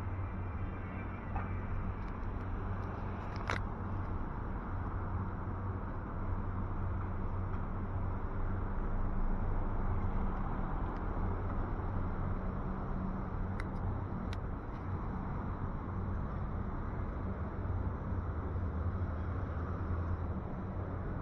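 Street ambience with a steady low hum and road noise, and a few faint clicks.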